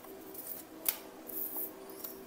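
Tarot cards being handled: a card drawn from a fanned deck and laid on a wooden table, giving a few soft clicks and rustles, the sharpest snap about a second in.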